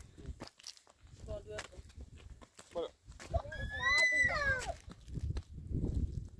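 Footsteps and clothing rustle on stony ground, with a loud, high-pitched drawn-out call about three and a half seconds in that holds steady and then falls away.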